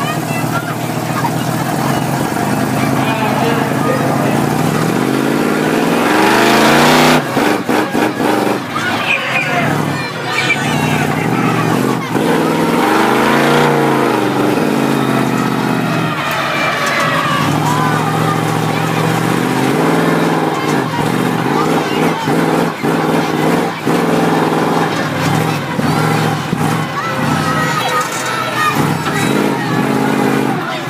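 Monster truck engine heard from inside the cab, revving up and falling back again and again as the truck drives and turns, with the loudest rise about seven seconds in.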